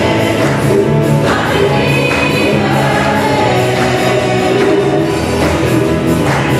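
Live Christian worship song: lead singers and a choir singing together over a band of piano, drums and guitars.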